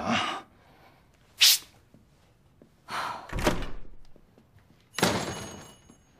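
Three separate knocks and thuds: a short sharp knock about a second and a half in, a heavier, deeper thud around three seconds in, and another bang about five seconds in that dies away over about a second.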